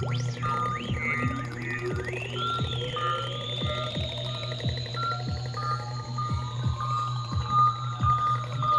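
Novation MiniNova synthesizer playing an electronic patch: a steady low drone under quick falling blips about twice a second, with a slow rising sweep and a high held tone. Short stepped high notes run over the top.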